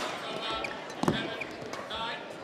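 Badminton racket strings striking a shuttlecock during a rally: a sharp hit right at the start and another about a second in. Short high squeaks from players' shoes on the court mat come between the hits.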